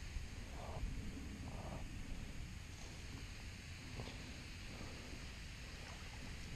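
Quiet outdoor background: a steady faint hiss with a low rumble, and two brief soft rustles in the first two seconds.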